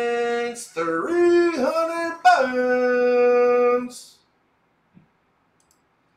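A man's voice singing three long, drawn-out notes, the middle one higher, that stop about four seconds in. Near silence follows for the rest.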